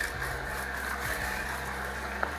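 Omega VRT330 slow vertical juicer running, its motor giving a steady low hum as it presses produce.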